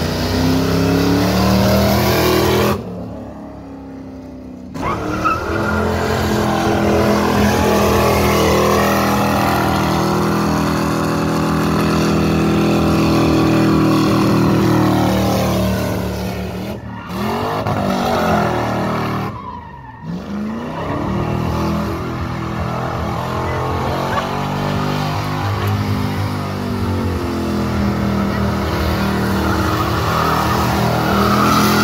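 Lincoln V8 revved hard through a long burnout, the rear tires spinning and screeching against the pavement. The engine falls off about three seconds in and dips twice more late on, each time revving straight back up.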